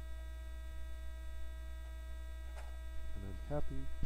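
Steady electrical mains hum on the recording, a low hum with a ladder of fainter steady overtones above it, part of the stream's poor audio. A single spoken word comes in near the end.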